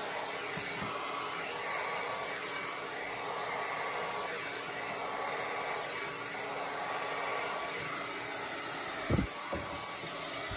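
A hand-held hair dryer running steadily with a faint whine, blowing air onto wet pour paint. Two short thumps come about nine seconds in.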